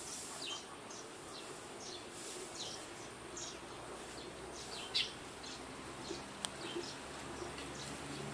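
Faint background bird chirping: short high chirps repeated irregularly, several a second, with a sharp click about five seconds in.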